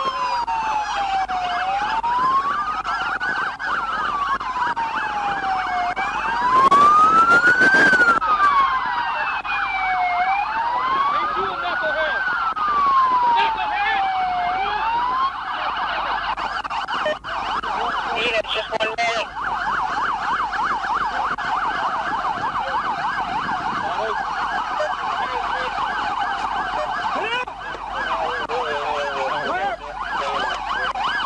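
Several police car sirens sounding together: one in a slow wail rising and falling about every four seconds, over another in a fast yelp. The wail stops about halfway through while the fast yelp keeps going. A loud burst of noise lasts about two seconds, roughly seven seconds in.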